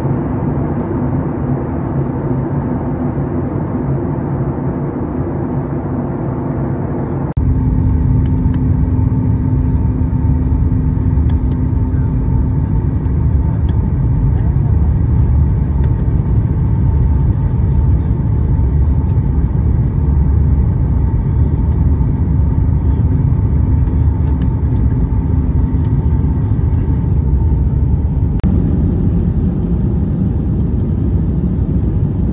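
Airliner cabin noise at a window seat: the steady roar of the jet engines and airflow. About seven seconds in it cuts to a louder, deeper roar during the approach and landing, with faint scattered clicks and rattles.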